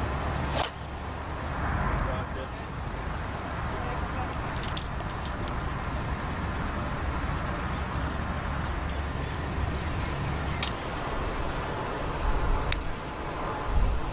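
A golf club striking a teed-up ball on a tee shot: a single sharp crack about half a second in, followed by steady outdoor background noise.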